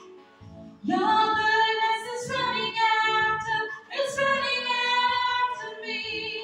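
A group of women singing a worship song together on long held notes, with electronic keyboard accompaniment underneath. It starts soft for about a second, then the voices come in strongly, with a brief break near the middle.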